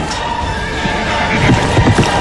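A horse whinnying, then galloping hoofbeats coming in about a second and a half in, over dramatic music.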